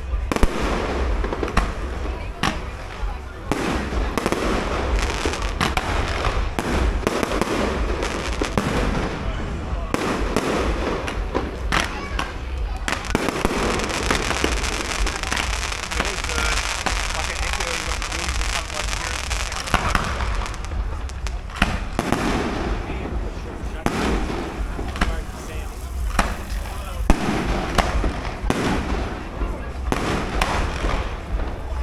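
A fireworks display: a run of sharp bangs and crackling aerial bursts, with a stretch of steadier hissing about halfway through while ground fountains burn.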